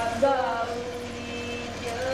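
A voice singing: a short rising note, then one long note held at a steady pitch for about a second and a half.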